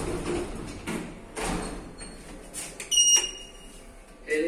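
Elevator's automatic sliding doors running, then about three seconds in a single loud, high electronic chime from the elevator that fades out within about half a second.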